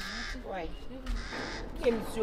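A woman's voice making short, broken sounds with no clear words.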